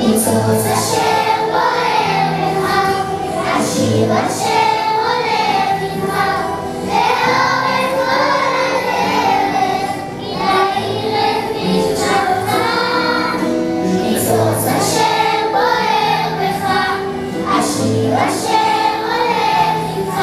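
A group of young children singing a Hebrew song in unison over a recorded backing track.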